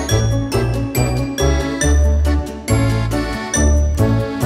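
Background music: a tune with a repeating bass line under bright, chiming high notes, on a steady beat.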